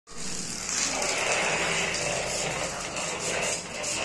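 The small DC gear motors of a line-following robot car running steadily.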